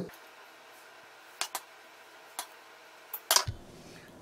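Quiet kitchen room tone with a few light, sharp clicks from utensils being handled on a wooden cutting board. Near the end comes a short louder clatter with a low knock.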